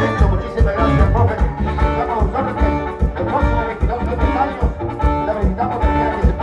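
Live band dance music from electronic keyboards over a steady, pulsing bass beat.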